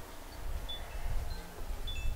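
Quiet background between spoken lines: a low steady rumble with a few faint, very short high-pitched peeps.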